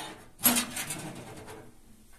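Metal door of a heating stove being pulled open: a sharp clank about half a second in, followed by about a second of rattling that dies away.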